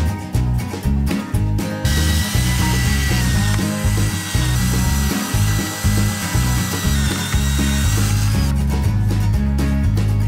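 Cordless drill running steadily with a whine, boring holes through a Kydex sheath blank, from about two seconds in until near the end. Background music plays throughout.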